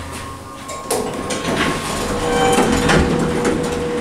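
Fujitec traction elevator car coming to a stop, then its stainless-steel doors sliding open with a rumbling rattle and a steady tone.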